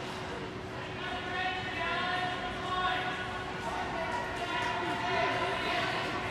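Spectators' voices calling out with long, held calls, echoing around an indoor ice rink.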